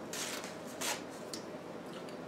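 Small handling noises at a table: two brief soft rustles in the first second, then a faint click.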